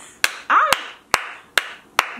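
A person clapping her hands in a slow, even rhythm, five claps a little under half a second apart, with a brief voiced exclamation after the first clap.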